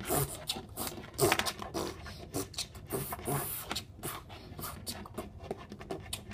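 Small plastic toy figures knocked and shuffled about on a table, a run of irregular light clicks and taps, with a few short vocal noises mixed in.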